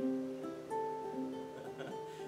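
Ukulele playing a picked intro: single notes plucked one after another and left to ring over each other, with a steady low tone underneath.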